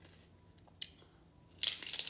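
A crisp fried tostada shell crunching as it is bitten into near the end, after a quiet stretch broken by one faint tick.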